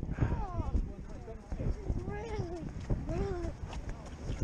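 Footsteps of several people walking on a dirt path, an irregular knocking that runs throughout, with indistinct voices of people nearby rising and falling a few times.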